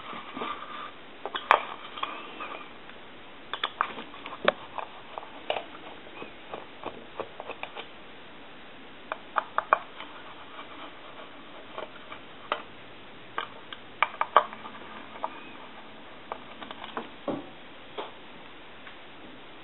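Scattered small clicks, taps and scrapes of a screwdriver working screws out of the base of a wooden duck telephone while the housing is handled, coming in irregular bunches.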